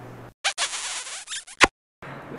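A scratchy, rasping sound effect lasting just over a second, ending in a sharp click, set between two gaps of dead silence.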